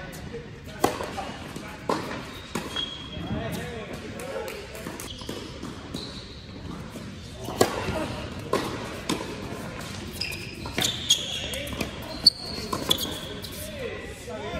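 Doubles tennis rally on an indoor hard court: sharp pops of racket strikes and ball bounces echoing in the hall, a dozen or so over the stretch, with brief high squeaks of shoes on the court.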